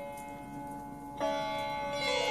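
Slow Indian sitar meditation music: steady held tones, then a sitar note struck a little past a second in that rings on with many overtones.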